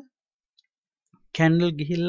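A pause of near silence, then a voice speaking from about one and a half seconds in.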